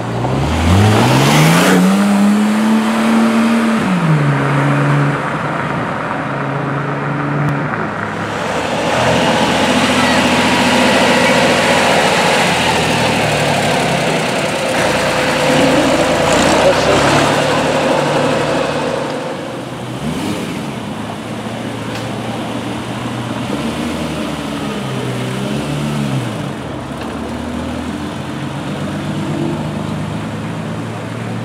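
Vehicle engines pulling away one after another. In the first few seconds one engine revs up sharply in a rising pitch, then drops as it changes gear. Around the middle a tractor's engine goes by, followed by more car engines accelerating away.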